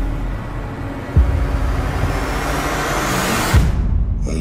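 Cinematic trailer sound design: a deep rumbling bed with a sharp low boom hit about a second in, then a whoosh that rises in pitch and builds through the second half, cut off by another low hit just before the end.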